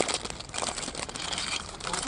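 Foil blind-bag wrapper crinkling as it is torn open and handled by hand, a dense run of crackles.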